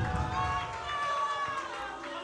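Indistinct voices murmuring and talking over one another, fainter than the main speaker. This is background chatter from people in the room, not one clear voice.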